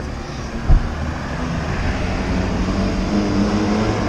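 A motor vehicle's engine running steadily on the street, a low hum, with a single low thump about three-quarters of a second in.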